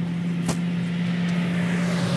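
Stake-bed truck's engine idling with a steady low hum; a single sharp knock about half a second in.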